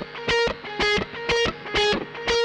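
Distorted electric guitar, a Fender Blacktop Stratocaster through a Laney IRT Studio amp with a Tube Screamer, tuned down a half step, playing a lead line. The phrase repeats with a loud accented note about twice a second over a held note.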